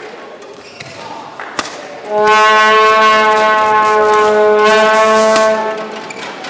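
A horn sounding one long held note for about three and a half seconds, starting about two seconds in, loud over the hall. Before it come a few sharp clicks and knocks from the rally of shuttlecock and racket.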